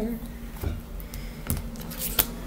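Tarot cards being shuffled and handled, with a few sharp card clicks; the loudest comes about a second and a half in.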